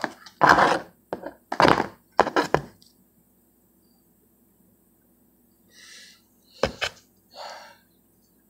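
Plastic toploader card holders handled on a cloth-covered table: three loud rustling knocks within the first three seconds, then a pause, then soft rustles and a sharp click near the end.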